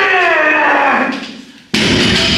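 A man's loud, drawn-out groan that slides down in pitch and fades over about a second and a half, the kind of strained vocalising heard during a heavy barbell deadlift. A new loud sound starts abruptly near the end.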